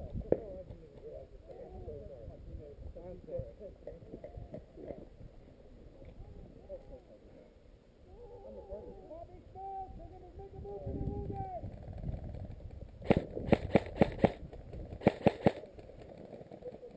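Footsteps crunching on a gravel trail, with faint distant voices. Near the end come two short strings of sharp, rapid snaps, about five and then about four, typical of airsoft rifle fire.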